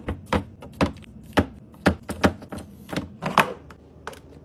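Hard plastic taps and clacks as snack packages are set into a clear plastic organizer bin: a run of sharp, irregular knocks, about two a second.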